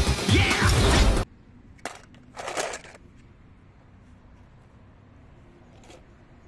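Animated film soundtrack, music with sound effects, that cuts off abruptly about a second in. Low background noise follows, with a brief click and a short rustle of handling noise.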